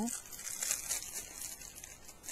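Soft, irregular crinkling of small plastic packaging being handled, as a product is taken out of its bag.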